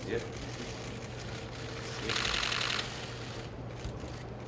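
A rapid burst of camera shutter clicks, cameras firing in continuous mode, lasting under a second about halfway through, over a steady low hum of room tone.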